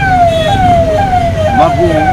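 Siren sounding a repeated falling tone, about two downward sweeps a second, over background talk.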